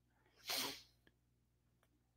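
One short, sharp breath sound from a person, a quick huff or sniff, about half a second in; otherwise near silence.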